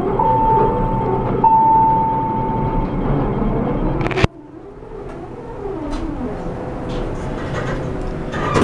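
Montgomery-Kone elevator: two long electronic tones of the same pitch sound one after the other, over the steady noise of the doors and machinery. About four seconds in a sharp knock as the doors shut, after which the cab noise drops to a quieter steady hum with a few faint clicks as the car moves.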